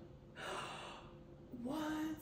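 A woman's breathy gasp, about half a second long, in reaction to a dismaying question, followed by her starting to say 'What'.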